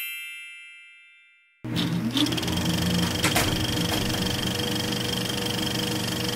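A bright, bell-like chime sound effect rings and fades away over about a second and a half. Then music starts suddenly and plays at a steady level.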